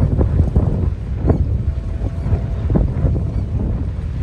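Wind buffeting the microphone: a steady low rumble broken by a few short crackles.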